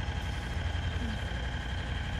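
Steady low rumble of a vehicle engine running nearby, with a faint thin high tone held over it.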